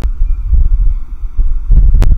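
Loud, uneven low rumbling and thumping of microphone handling noise, with a click at the start and another at the end.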